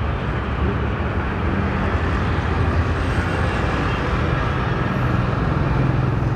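Steady road traffic noise: vehicle engines and tyres running past, with a faint low engine hum.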